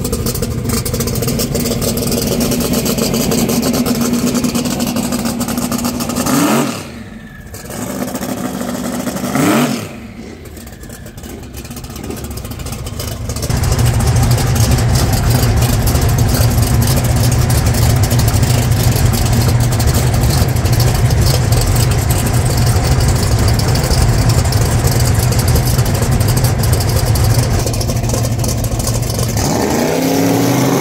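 Drag race car's engine idling, blipped twice sharply about six and a half and nine and a half seconds in, then running loud and steady with a deep note, heard from inside the cockpit.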